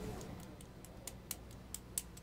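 Faint, irregular clicks, about four a second, over quiet room hiss.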